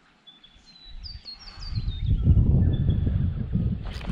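Birds chirping in short, falling notes. From about a second in, a low rumble builds and stays loud through the second half.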